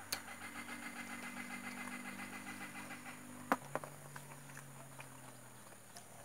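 A motor engine running steadily in the background with a fast, even pulsing; about three and a half seconds in, its pitch drops and the pulsing stops. A sharp click comes at the very start and another at that change.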